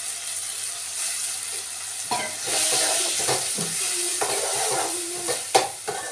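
Food sizzling in a steel pan on a gas stove, growing louder about two and a half seconds in as ingredients from a steel bowl go in. A spoon scrapes and clinks against the metal, with one sharp clink near the end.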